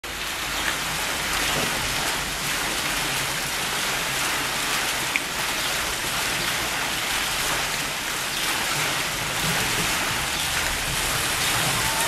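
Water running down the lanes of a water slide, a steady rain-like hiss.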